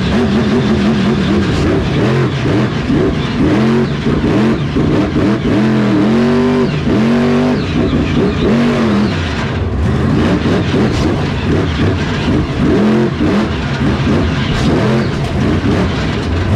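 Grave Digger monster truck's supercharged V8 engine revving up and dropping back over and over, heard from inside the cab, its pitch climbing and falling about once a second.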